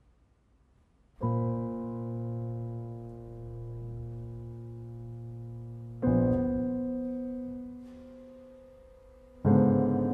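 Two pianos sounding soft, sparse chords, each struck once and left to ring and slowly fade. After about a second of near silence one chord sounds, a second comes in about halfway, and a third near the end.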